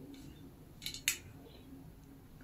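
Two sharp clicks a quarter second apart, about a second in, from the ring light stand's top mount and pole being handled and adjusted.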